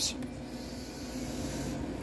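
Wooden pointer sliding over paper flow sheets on a clipboard, a soft, steady rubbing hiss.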